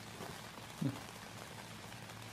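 A single short, falling 'hmm' from a person just under a second in, over a steady, even background hiss.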